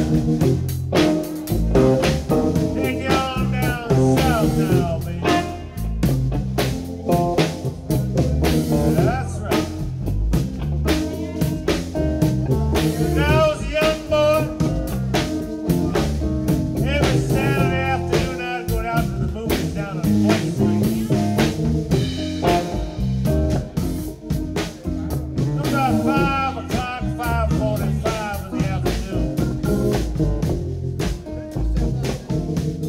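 A live band playing with drum kit, electric bass and electric guitar, over a steady beat. A male singer sings lines into the microphone at intervals between the instrumental passages.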